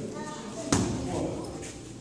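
A gloved punch landing on a focus mitt: one sharp smack about two-thirds of a second in, with a man counting aloud.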